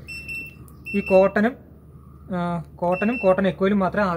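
IFB Diva Aqua SXS front-load washing machine's control panel beeping as the program selector dial is turned. There are three high electronic beeps: one at the start lasting about half a second, a short one about a second in, and another about three seconds in.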